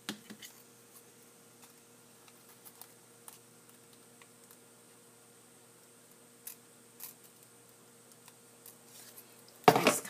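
Scissors snipping into folded origami paper: a few short, faint cuts scattered through the quiet.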